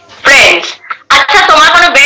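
Speech over a video call: a woman talking, opening with a short sharp burst of voice about a quarter second in.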